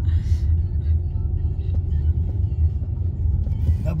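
Steady low rumble of road and engine noise heard inside a car's cabin as it drives along a narrow, winding paved road. A voice starts speaking right at the end.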